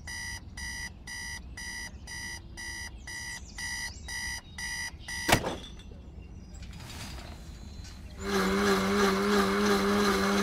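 Electronic beeping, a pitched beep repeated about twice a second for roughly five seconds, cut off by a sharp click. Street noise follows, and about eight seconds in a motor vehicle's engine comes in, louder than the beeping and steady in pitch.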